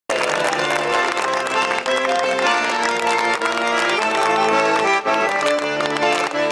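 Russian garmon (button accordion) playing a lively folk tune, a melody over pumped chords, starting abruptly right at the beginning.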